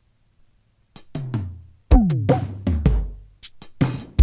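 Yamaha RX7 drum machine pattern played back from a Fostex 380S cassette four-track, coming in about a second in with kick and snare hits. Some hits drop in pitch and leave low booming tails.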